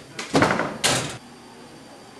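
Metal school locker door being worked: a rattling clatter followed by one sharp metallic bang a little under a second in.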